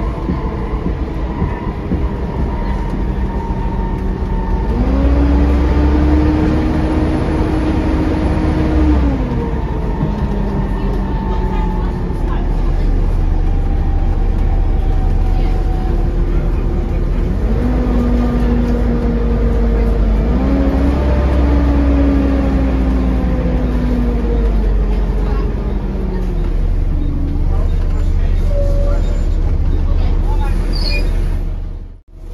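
Volvo B7TL double-decker bus's six-cylinder diesel heard from the upper deck, pulling away twice, rising in pitch through the gears and then easing off. A constant high whine from the engine's cooling fans sits above it.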